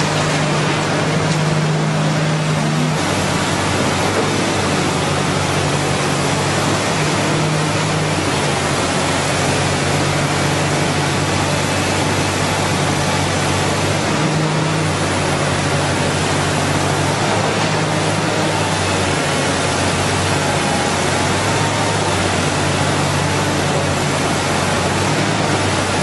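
Komatsu excavator's diesel engine running, a low hum that shifts a little as the machine works, under a loud, steady rushing noise.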